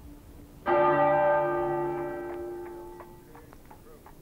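A heavy bell tolling: one stroke about a second in rings out and slowly fades, over the dying hum of the stroke before.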